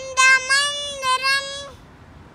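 A three-year-old girl singing a Telugu patriotic song with no accompaniment: one phrase sung mostly on a single steady pitch, ending shortly before the end.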